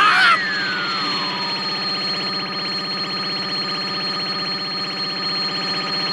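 Anime electric-shock sound effect: a steady, rapidly pulsing electric buzz with a thin high whine over it. A tone glides downward during the first two seconds.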